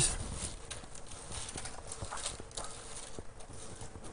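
Faint rustling of Bible pages being turned at a lectern, with a few light taps scattered through it, over a faint steady hum.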